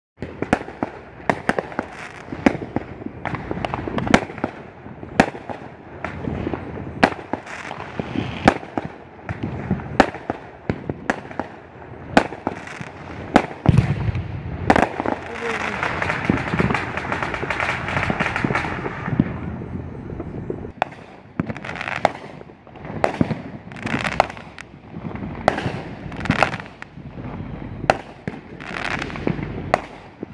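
Fireworks going off overhead: a steady stream of sharp bangs and pops, with a few seconds of dense crackling about halfway through.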